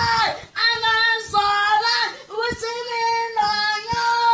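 A child singing loudly in a high voice, holding long notes with short breaks between phrases.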